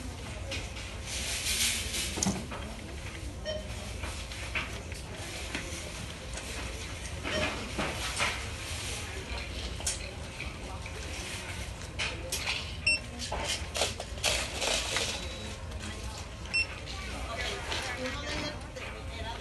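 Plastic DVD cases being handled at a wire display rack: scattered, irregular rustles and light clacks, busiest near the end, over a low steady hum.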